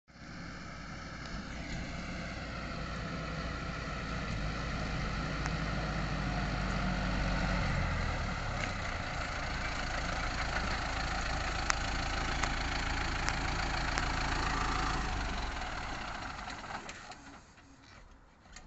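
Kubota farm tractor's diesel engine running as it drives up a gravel track towing a trailer, growing louder as it approaches. The engine sound fades away over the last few seconds as the tractor comes to a stop.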